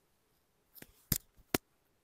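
A quick run of sharp clicks after a quiet first second, the two loudest about half a second apart.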